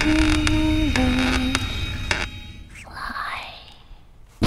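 Horror-trailer soundtrack: a held melody note over a low drone steps down once and fades out about two seconds in. A breathy whisper follows about three seconds in, then it goes almost quiet.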